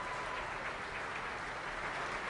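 Steady applause from a large crowd of legislators clapping.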